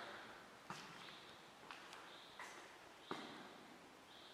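Near silence in an empty stone church: a handful of faint footsteps on the stone floor, irregularly spaced.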